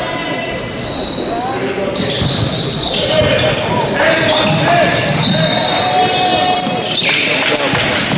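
Basketball game sounds echoing in a gym: a basketball bouncing on the court among the voices of players and spectators.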